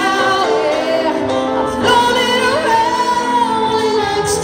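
A woman singing into a microphone with musical accompaniment, holding long, drawn-out notes.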